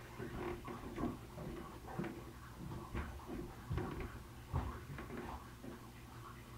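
A series of muffled thumps and knocks, irregularly spaced about once or twice a second, over a steady low hum.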